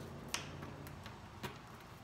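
Small mosaic tiles clicking against one another as a hand spreads them on a table. There are two clear clicks about a second apart, with fainter clicks between.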